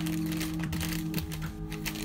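Tissue paper rustling and crinkling in the hands as a boxed item is unwrapped, a quick run of small crackles, over background music with long held notes.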